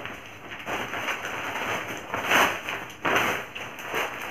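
A plastic carry bag being handled, rustling and crinkling in uneven bursts, loudest a little after two seconds in and again around three seconds in.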